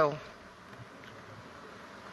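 A woman's voice trails off at the very start, then a faint steady hiss of hall room tone with no distinct events.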